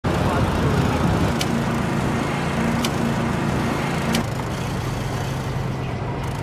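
Steady motor rumble under a loud, even hiss, with three short, sharp clicks about a second and a half apart. The rumble drops a little after about four seconds.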